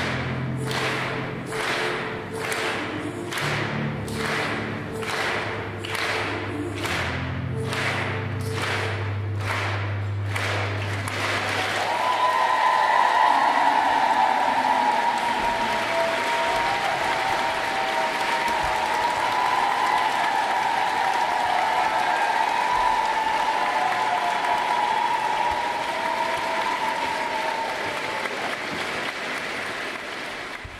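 Sustained low notes of cello and piano over a steady beat of sharp strikes, about one and a half a second, end about eleven seconds in. A concert audience then breaks into loud applause and cheering, easing off near the end.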